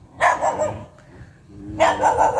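A dog barking: one bark about a quarter-second in, then another near the end.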